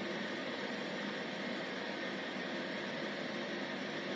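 Electrolux Time Manager front-loading washing machine running, a steady even hiss with no beat or knocks.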